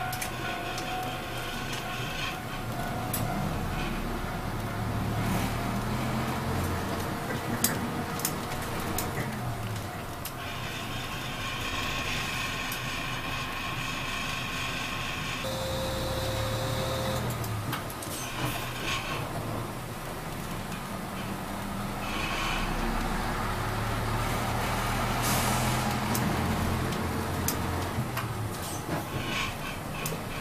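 City bus engine heard from inside the passenger cabin, rising and falling in pitch several times as the bus speeds up and slows. Air brakes give a hiss near the end.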